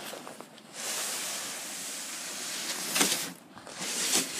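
A plastic sled dragged over snow: a steady scraping hiss starts about a second in and runs for a couple of seconds. It has a sharper crunch near the end.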